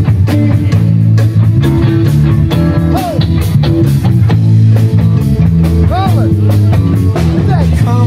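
Live rock band playing through an outdoor PA, with bass guitar, drums and a man singing into a microphone.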